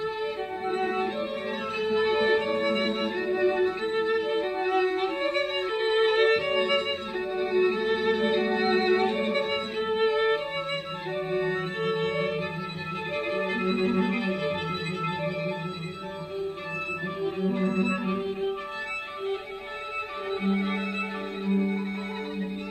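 String quartet playing contemporary chamber music: a high, rippling first-violin figure of repeated short notes over tremolo and held notes in the second violin, viola and cello, the low held notes changing pitch every few seconds.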